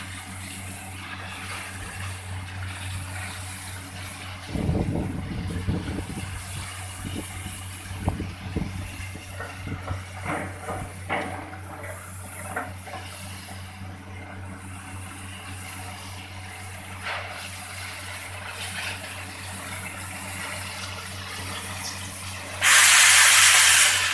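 Borewell drilling rig running steadily, with its engine and air compressor humming while compressed air blows water and slurry up out of the borehole in a continuous rushing hiss with irregular gushing surges. Near the end a sudden, much louder hiss of air cuts in.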